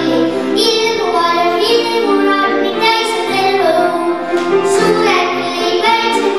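A young girl singing a song into a microphone, with instrumental accompaniment under her voice.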